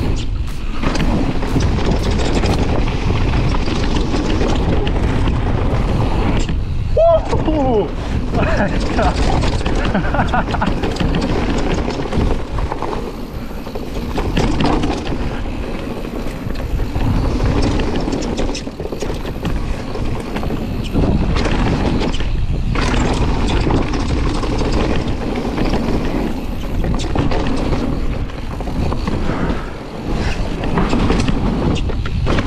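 E-mountain bike ridden fast down a dirt forest trail: steady tyre and wind noise with the bike clattering and rattling over roots and bumps.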